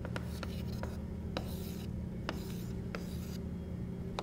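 Chalk drawing small circles on a chalkboard: scratchy strokes with several sharp taps as the chalk meets the board, over a steady low hum.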